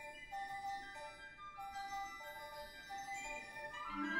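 Concert band in a soft passage: a quiet single melodic line of held notes moving step by step, with the full band coming in louder and lower right at the end.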